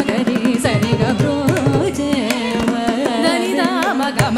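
Carnatic concert music: female voices sing a richly ornamented melody, with bending, sliding pitches, accompanied by violin and steady mridangam strokes.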